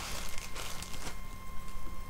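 Rustling and handling noise of packaging as a small pack of sewing needles is put away, in a few short bursts.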